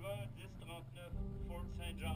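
A voice, over a low steady hum that gets louder about a second in.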